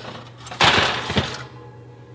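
A metal baking sheet lined with foil scraping and clattering as it slides off a wire oven rack, a rough scrape of about a second starting about half a second in.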